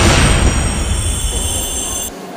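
Broadcast news bumper sound effect under an animated title graphic: a rushing whoosh that fades in the first half second, then high steady ringing tones held over a low rumble, all cutting off suddenly at the end.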